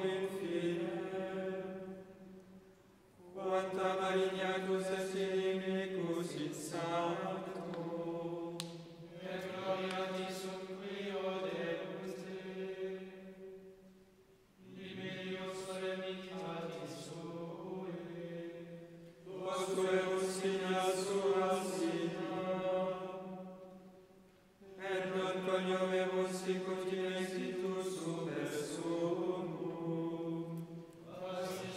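Latin plainchant sung by men's voices, held on a mostly level pitch in long phrases of several seconds, broken by short pauses for breath.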